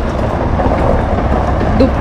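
A heavy truck's diesel engine idling close by, a steady low rumble with an even wash of noise above it.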